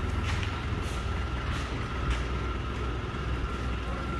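Rough-terrain forklift's engine running with a steady low rumble as it drives slowly carrying a loaded pallet.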